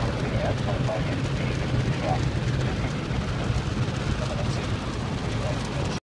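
Automatic car wash heard from inside the car: water spray pelting the windshield and glass, over a steady low hum from the running wash machinery.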